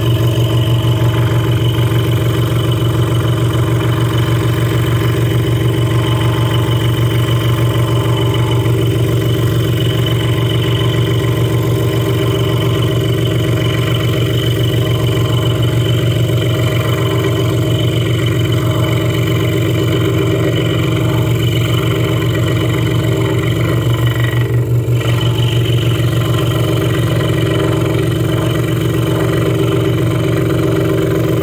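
Hegner Multicut 2S scroll saw running steadily, its reciprocating blade cutting through a thick block of wood along a traced circle; a loud, even motor hum throughout.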